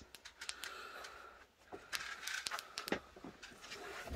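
Faint, quick clicks of a Sofirn LT1 lantern's switch being pressed over and over while it is changed from cool white to yellow light, with a few in the first half second and another cluster about two seconds in.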